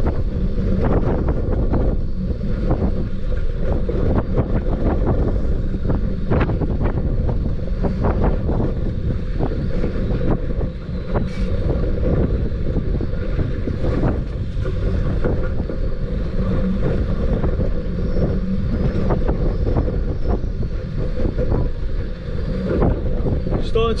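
Strong wind buffeting the microphone as a steady low rumble, with scattered irregular knocks.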